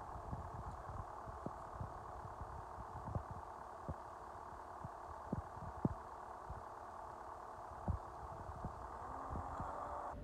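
Multicar Tremo Carrier municipal vehicle's diesel engine idling steadily, with scattered light clicks over the hum.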